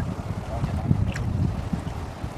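Uneven low rumble of wind buffeting the microphone, over river water stirred by two men wading neck-deep.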